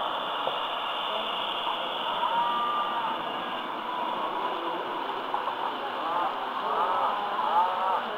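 Model freight train rolling past close by on the layout's track, a steady rolling noise, with indistinct voices of people talking in the background that grow more noticeable near the end.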